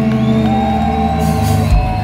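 Thrash metal band playing live at loud volume, heard from within the crowd: a held distorted guitar chord with long gliding notes, a crash and a low drum hit about three-quarters of the way in, and fans whooping and shouting.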